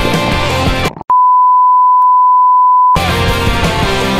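Rock background music with guitar. About a second in, the music cuts out and a loud, steady single-pitch beep tone holds for about two seconds; then the music starts again abruptly.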